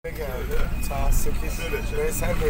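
Steady low rumble of a moving dolmuş minibus, heard from inside the cabin, with indistinct voices over it.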